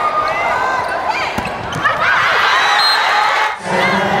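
Volleyball rally in an indoor arena: the ball is struck with a couple of sharp smacks about halfway through, over shouting voices and crowd noise. The sound drops briefly near the end.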